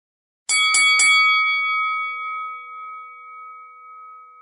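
A bell-like chime sounding on an end card: struck three times in quick succession about half a second in, then ringing on in a slowly fading tone.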